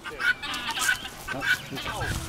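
Birds calling in short repeated calls, about three in two seconds.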